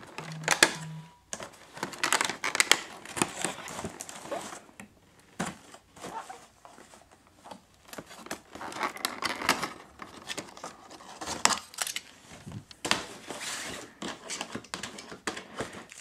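Cardboard and clear plastic crinkling and rustling in irregular crackles as a small ornament is worked out of an advent calendar door and handled in its plastic wrapper.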